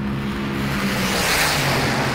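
A car engine note starts suddenly with a rushing whoosh that swells and fades, like a car speeding past.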